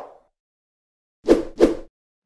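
Two quick pop sound effects from an animated logo intro, about a third of a second apart, starting about a second and a quarter in after silence.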